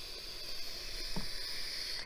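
A long, steady hiss of air drawn in through a vape pen as it is puffed.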